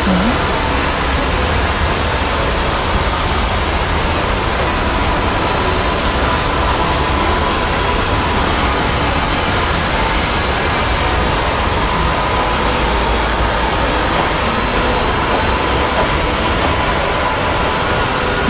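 A loud, steady wash of noise from many video soundtracks playing at once and blending together, with no single sound standing out; a faint steady tone sits in the mix.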